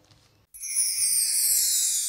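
Animated logo sound effect: after a near-silent first half second, a bright, high-pitched shimmering sound starts suddenly and slowly falls in pitch, running steadily until it begins to fade at the very end.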